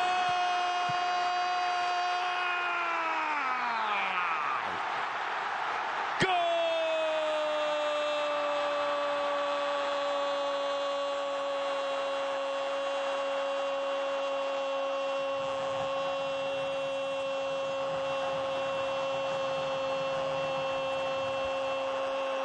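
A Spanish-language football commentator's drawn-out goal call. A held shout slides down in pitch about three to four seconds in. Then, about six seconds in, "¡Gol!" starts sharply and is held for about sixteen seconds on a single, slowly sinking note, marking a goal just scored.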